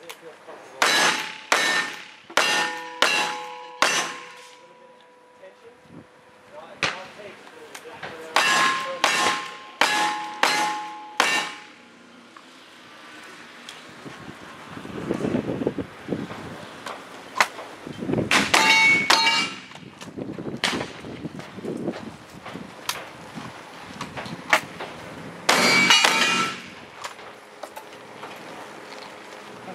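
Strings of rapid gunshots, each strike followed by the clang and ring of steel targets being hit. Two quick strings run through the first dozen seconds, then after a lull come scattered shots and two dense clusters of shots and ringing steel near the end.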